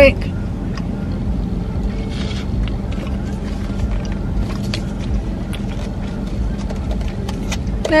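Car engine idling: a steady low rumble and hum heard inside the cabin. A few faint clicks and taps come from handling a paper cup and its plastic lid.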